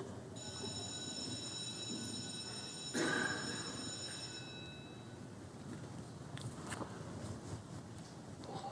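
Quiet legislative chamber during an electronic roll-call vote: a steady high electronic tone sounds for about four seconds, with one short louder noise about three seconds in and a few faint clicks later, over low room hiss.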